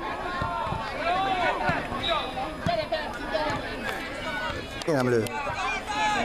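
Several voices calling out and shouting across an open football pitch, overlapping, with one falling call about five seconds in.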